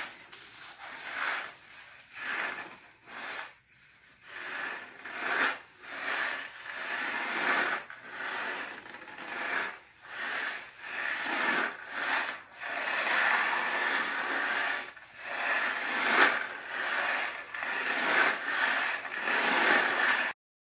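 Homemade paper-plate ocean drum tilted back and forth, its dry filling sliding across the plate in a surf-like hiss. The hiss swells and fades about once a second and runs more continuously in the second half.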